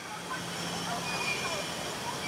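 Distant children's voices over a steady low hum.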